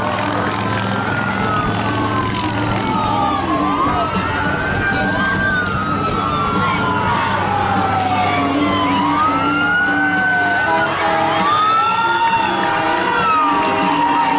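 Emergency-vehicle sirens wailing, several rising-and-falling wails overlapping one another, over a low steady hum.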